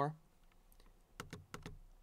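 A short run of light, quick computer clicks, about half a dozen, starting just under a second in and bunched in the last second.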